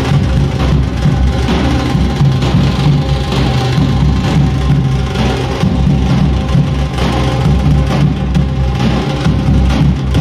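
Loud, continuous drum-heavy music with a heavy bass drum.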